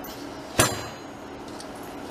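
A single sharp metallic clink about half a second in, something knocking against the stainless steel mixing bowl and ringing briefly, over a faint steady hum.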